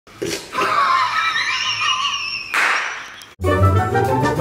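High, wavering vocal sounds end in a short breathy rush. After a brief gap, the show's intro music starts about three and a half seconds in.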